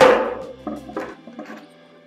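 A motorcycle brake caliper set down on an upturned plastic bucket: one sharp knock with a short ring, then a couple of lighter knocks as it settles.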